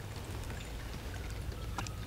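Shallow creek water running freely between riprap rocks at a culvert outlet. A faint, steady trickle with a few small ticks.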